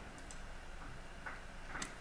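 A few faint clicks of a computer mouse, one around a quarter second in and more near the end, over a low steady background hum.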